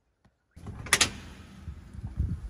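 A door being opened: the latch clicks sharply twice in quick succession about a second in, over a low rustle of movement, after a near-silent first half-second.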